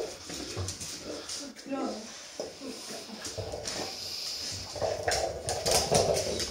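A Dalmatian whining in short bending cries while working at a treat-dispensing toy, with scattered light clicks on a tile floor.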